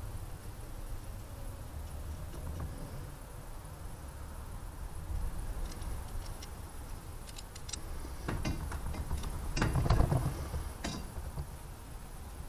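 Scattered light metallic clicks and clinks of small hardware being handled, growing busier and louder between about 8 and 10 seconds in, over a steady low rumble of a chest-worn camera rubbing against clothing.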